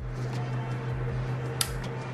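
A light dimmer knob being turned, with one short click about one and a half seconds in, over a steady low hum and hiss.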